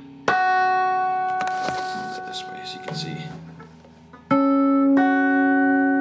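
Guitar notes picked in pairs and left to ring, fingered as a D minor chord shape high on the neck: a first pair about a quarter second in, softer notes around 1.5 and 3 seconds, then two more strongly picked near the end that sustain.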